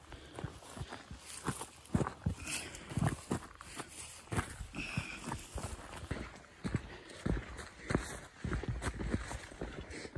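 Footsteps of a hiker walking downhill on a rocky trail of gravel and dry grass: an uneven series of crunching steps, about one or two a second.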